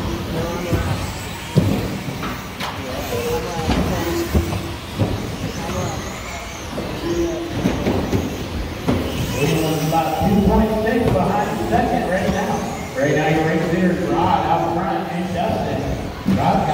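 Electric 2WD RC buggies racing on an indoor carpet track: motors whining up and down in pitch, with a few sharp knocks from landings and hits early on. A voice talks over it through the second half.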